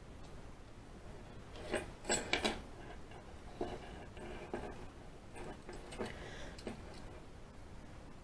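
Small metal clicks and clinks from lockpicking tools and a Commando padlock being handled, with a cluster of sharp clicks about two seconds in, then softer scraping and ticking.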